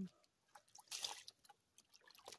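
Feet wading in shallow water: a few small, faint splashes and drips, the loudest about a second in.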